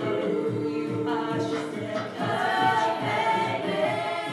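Show choir singing sustained chords in close harmony, the notes moving higher about halfway through, over a band with a steady drum beat.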